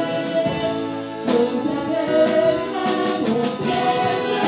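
A man and a woman singing a duet into handheld microphones over instrumental accompaniment, the notes changing about every half second.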